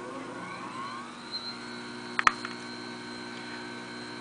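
Jeweler's lathe electric motor spinning up after being switched on. Its whine rises in pitch, levels off about a second and a half in, and then runs steadily. A couple of sharp clicks come a little past two seconds in.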